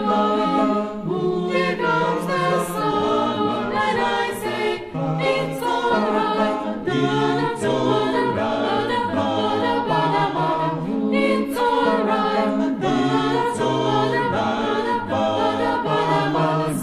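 A cappella vocal ensemble of adults and children singing in several parts, with no instruments.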